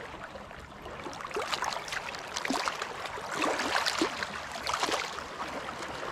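Shallow seawater lapping and sloshing close by over rocks, with small splashes and gurgles that grow busier about a second in and are loudest around the middle.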